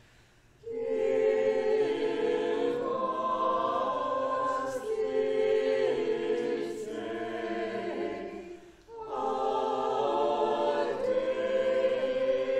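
A choir singing in slow sustained phrases. It comes in under a second in and pauses briefly for breath about nine seconds in.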